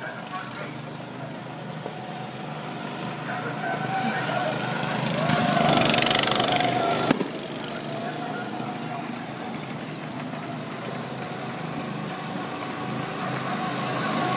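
Go-kart engines running as karts lap the track, one growing louder as it passes close about five to seven seconds in. A single sharp click comes just after the loudest moment.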